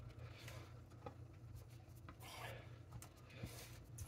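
Faint soft rubbing of fingers pressing and smoothing raw pie-crust dough into a cast iron skillet, with a couple of light ticks, over a low steady hum.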